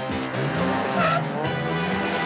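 Military off-road jeep's engine revving up and down as it pulls away, with a brief tyre squeal about a second in, over film music.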